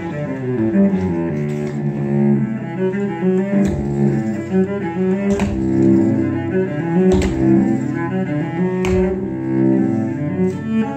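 A cello bowed in a steady run of short, stepping notes, with sharp tap-shoe strikes on a wooden stage landing every second or two over the melody.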